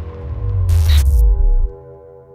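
Logo intro sting: a deep bass rumble swells and cuts off sharply near the end, with a burst of static-like hiss about a second in. Over it a chord of steady tones rings on and fades away.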